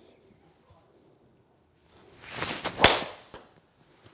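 A driver swung at about 107 mph clubhead speed: a whoosh building for just under a second, then a sharp crack as the clubhead strikes the teed golf ball, about three seconds in.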